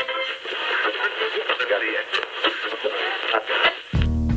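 A thin, radio-like stretch of a rap diss track with the bass and treble cut away, holding indistinct voices. It cuts in abruptly and gives way to full-range music right at the end.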